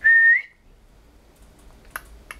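Blue-headed pionus parrot giving one short, loud whistle: a steady note that lifts slightly in pitch at its end.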